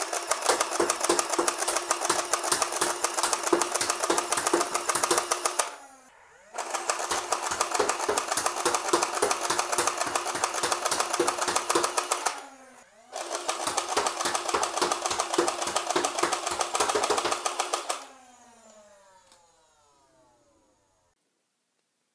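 Nerf Stryfe blaster converted to full-auto with a motor-driven pusher, firing three bursts of about five seconds each: a rapid clatter of pusher strokes and darts over the whine of the flywheel motors, which rises at the start of each burst and falls away after it. Some pusher strokes push no dart into the flywheels, skip steps that point to a feed alignment issue, which could be the printed arm or the spur gear slipping on the rack gear.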